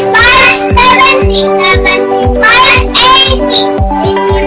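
A child singing a skip-counting-by-fives song over backing music with held notes and a steady beat.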